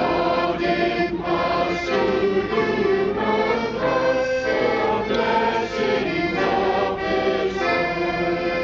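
Children's school choir singing in phrases over an instrumental accompaniment.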